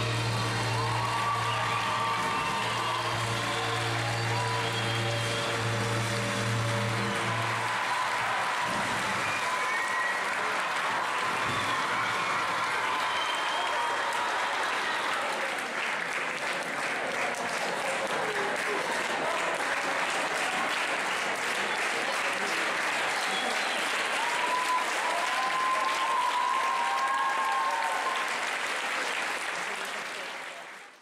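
Upbeat stage music ends about eight seconds in, and an audience then claps and cheers, with shouts rising over the applause; it fades out near the end.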